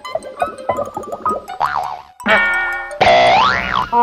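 Comic cartoon sound effects laid over music: a quick run of short twangy notes, then boing-like tones that swoop up and down in pitch. The last swoop, near the end, is the longest and loudest.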